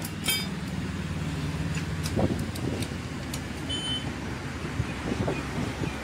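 A motor vehicle engine running steadily in the background, stopping about two seconds in, with scattered clinks of metal hand tools against a dismantled engine.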